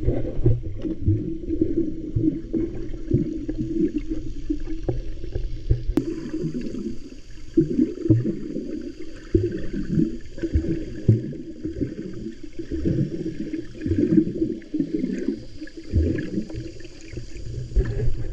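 Muffled water sound picked up by a camera held underwater: water sloshing and churning around the camera, with irregular short swishes as a snorkeler swims and kicks.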